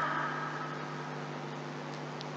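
A pause in speech filled by a steady low hum over a faint hiss, with the room's echo of the last words fading away in the first half second.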